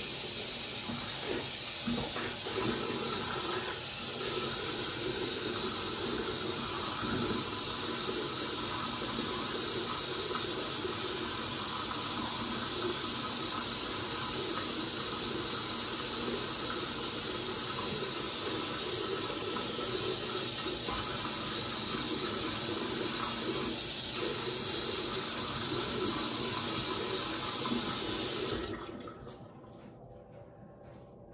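Bathroom sink tap running steadily while a face is rinsed under it, washing off a face mask; the water is shut off about a second before the end.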